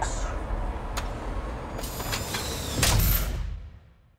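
Trolleybus running noise heard from inside: a steady low rumble, a sharp click about a second in, then a louder rush of air with rattling from about two seconds in, fitting the air-driven doors or brakes at a stop. The sound fades out near the end.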